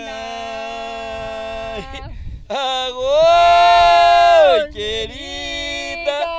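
A man singing a jongo ponto unaccompanied, in long drawn-out notes. The loudest note comes about halfway through: it swings up in pitch, is held for about two seconds, and falls away.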